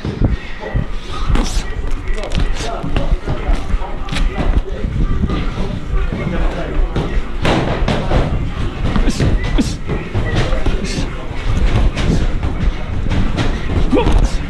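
Boxing gloves striking in sparring: a fast, irregular run of padded thuds and slaps, some very close, over a constant low rumble.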